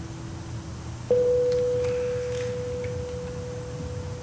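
A single clear note plucked on an amplified electric string instrument about a second in, ringing out and slowly fading, over a steady low hum.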